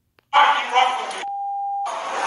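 Sound of an Instagram video starting to play on the phone: voices, broken a second in by a steady single-pitch beep of just over half a second that blanks out all other sound, like a censor bleep, before the voices return.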